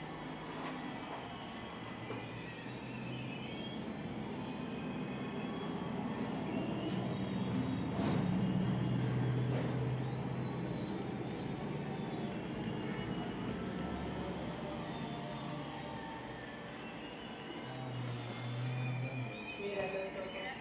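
Low, steady rumble of passing road traffic, with faint music in the background.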